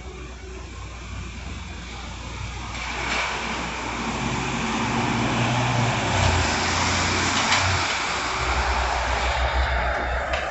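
A van driving past on the street, its engine and tyre noise swelling a few seconds in, loudest midway, then fading.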